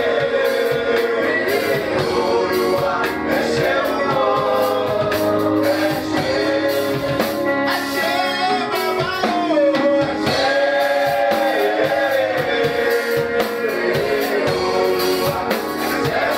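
A man singing a worship song into a microphone, amplified through the church sound system, over instrumental backing. His voice holds long notes and slides between pitches.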